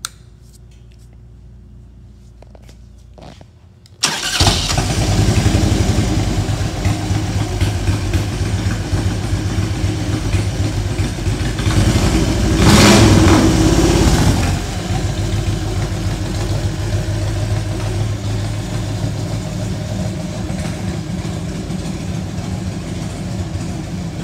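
2000 Harley-Davidson Road King Classic's fuel-injected Twin Cam 88 V-twin starting about four seconds in and then idling. It is revved briefly about halfway through before settling back to idle.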